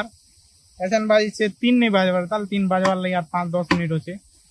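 A man speaking, starting after a brief near-silent pause of under a second.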